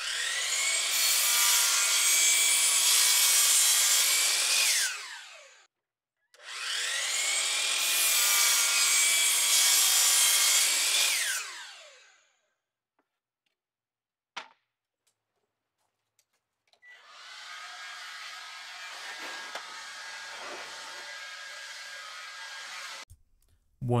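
Hercules sliding compound miter saw making two crosscuts through a pine 1x12 board, each about five seconds long: the motor whine rises as it spins up, cutting noise runs through the board, and the whine falls away as the blade winds down. A single click comes in the middle, then a quieter steady noise for about six seconds near the end.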